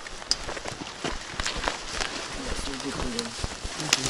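Footsteps of several people walking quickly over a sandy track and into tall dry grass, with the rustle of clothes and backpacks: a string of short, irregular scuffs.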